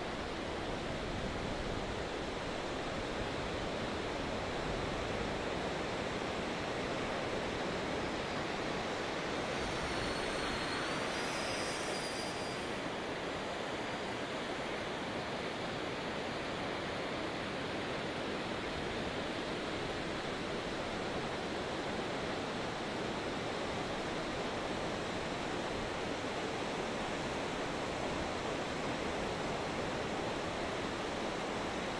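Steady rushing noise of surf. About ten seconds in, the faint high whine of a 64 mm electric ducted-fan model jet comes through briefly, dipping and then rising in pitch.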